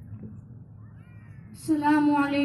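A low murmur of a gathered audience, then near the end a single voice starts a long held sung note with a steady pitch, the opening of a naat recitation.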